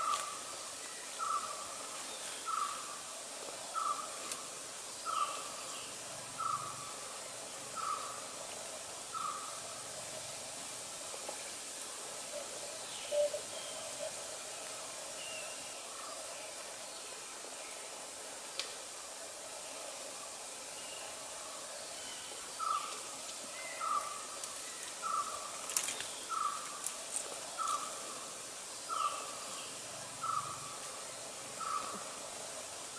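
A forest bird calling one short note over and over, about once every 1.3 seconds, falling silent for several seconds midway and then starting again, over a steady high hiss. A few sharp crackles come near the end.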